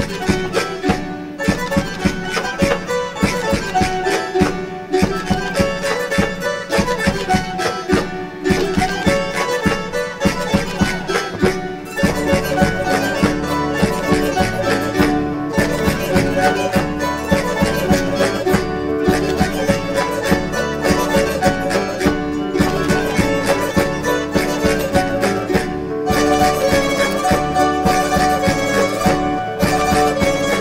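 A Canarian folk string ensemble of guitars and lute-type plucked instruments plays a lively traditional dance tune with a steady strummed beat. The sound fills out with low notes about twelve seconds in and grows louder a few seconds before the end.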